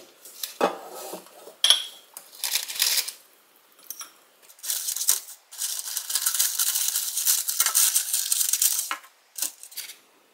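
A ceramic plate set down on a stone counter with a few knocks, then wooden chopsticks scraping and tapping in an air fryer basket as they work crispy shrimp tempura loose. The second half is a long stretch of crackly, rustling scraping, ending in a couple of short taps.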